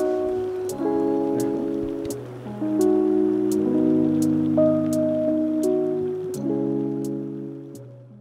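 Outro music: sustained chords that change about once a second over a light tick roughly every 0.7 s, fading out near the end.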